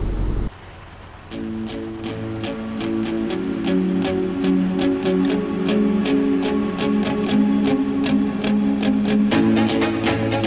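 Background music: plucked guitar over held notes with a steady beat, starting about a second in after a short lull.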